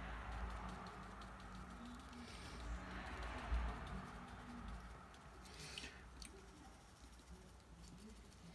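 A wide flat brush dabbing and dragging watercolour paint across textured paper: a faint, scratchy brushing that swells about three seconds in, with a short scrape near six seconds.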